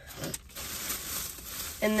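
Soft rustling and crinkling of plastic as shopping items are handled, broken by a brief pause about half a second in.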